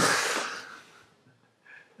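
A sharp breathy exhale from a person close to the microphone, fading out within about a second.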